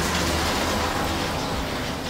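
A car passing in the street: a steady rushing noise that slowly fades.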